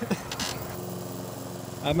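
Petrol push lawn mower's small engine running steadily at idle, one even tone held throughout.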